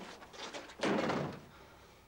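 An apartment's front door being pulled shut, landing with one solid bang a little under a second in.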